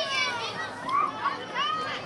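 Children's and onlookers' voices shouting and calling out at a youth football game as a play starts, with a high-pitched shout right at the start and more short shouts about a second in and near the end.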